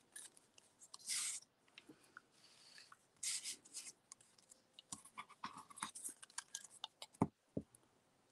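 Quiet handling of cut-out paper shapes and a glue stick being rubbed on paper: short rustles and scrapes, then a string of small clicks, with two sharp knocks a little after seven seconds.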